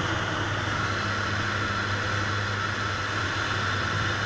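Steady drone of the PAC Cresco agricultural aircraft's turboprop engine and airflow, heard inside the cockpit in level flight.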